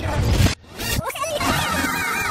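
A film soundtrack played backwards at double speed. A dense burst of noise cuts off suddenly about half a second in, followed by garbled, high-pitched wavering voice and music.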